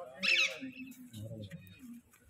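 A short, high-pitched animal call about a quarter second in, over faint low murmuring voices.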